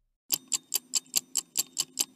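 Clock-ticking sound effect with fast, even ticks about five a second, starting a moment in, played over an animated clock face to mark time passing.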